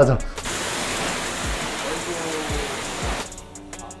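High-pressure water spray from a self-service car wash wand, hissing steadily for about three seconds and cutting off abruptly.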